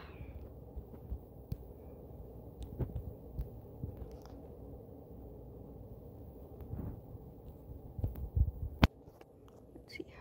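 A low steady hum with scattered soft thumps and faint clicks. A short cluster of louder thumps about eight seconds in ends in a sharp click.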